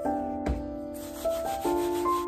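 Soft piano music playing slow chords. From about half a second in, a rubbing, scrubbing noise runs over it, starting with a low thump.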